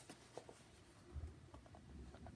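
Faint handling noise of a paper book being picked up and held: soft rustles and small clicks, with a low bump about a second in, over quiet room tone.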